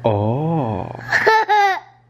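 A man's low voice wavers up and down in a drawn-out silly 'ooh', then a toddler girl laughs in two short high-pitched bursts.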